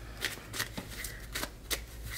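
A tarot deck being shuffled by hand, the cards snapping together in several short, separate strokes.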